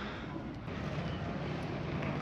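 Steady outdoor street background: a low rumble of distant traffic with some wind on the microphone, with no distinct events.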